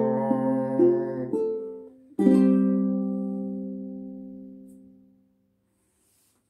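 Five-string Baton Rouge ukulele ending the song: the chord that is ringing fades out about a second in, then one final strummed chord about two seconds in rings out and dies away over about three seconds to silence.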